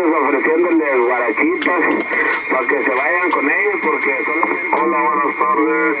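A man speaking Spanish without pause over the radio, heard through a Kenwood TS-950SDX HF transceiver. The sound is narrow, cut off at the low and high ends, and a thin steady tone runs beneath the voice.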